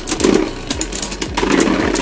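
Two Beyblade spinning tops whirring in a plastic stadium and clashing again and again, giving a fast, irregular run of sharp clicks and scrapes over the steady spin.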